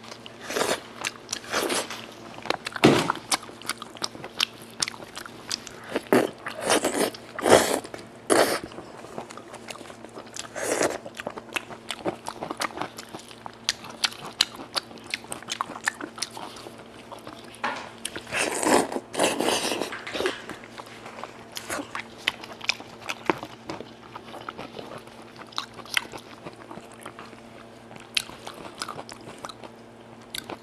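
Close-miked chewing, biting and lip smacking as a person eats braised goat head meat: irregular sharp mouth clicks, with louder clusters of smacking about two, seven and nineteen seconds in. A faint steady hum runs underneath.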